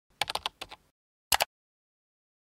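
Keyboard-typing sound effect: a quick run of key clicks, then after a short gap a loud double click.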